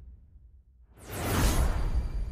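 Cinematic trailer sound effect: a low rumble fading away, then about a second in a sudden loud whoosh over a deep boom, sweeping down and dying out slowly.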